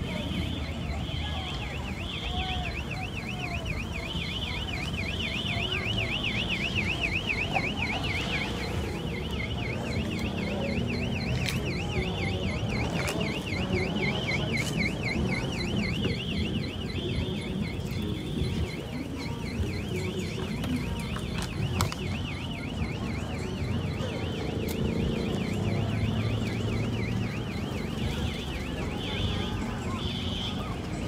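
Car alarm going off continuously: a fast, high warbling tone with bursts of a steady higher tone cutting in and out above it, over low background noise and a few sharp clicks.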